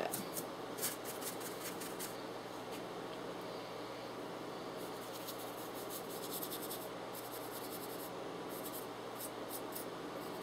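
Soft, irregular brush strokes rubbing pastel onto a model horse, a faint scratchy brushing that comes and goes, over a steady low hum.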